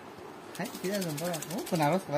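A man's voice, low and indistinct, speaking or murmuring a few syllables, over a faint, rapid run of clicks.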